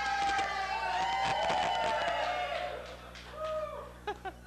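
Comedy club audience laughing and cheering, with scattered clapping, after a punchline; it dies down after about three seconds.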